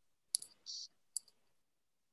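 Faint clicking at a computer: two quick clicks, a short soft hiss, then a single click a little over a second in.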